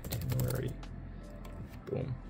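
Computer keyboard typing: a quick run of key clicks in the first second, then a few scattered clicks.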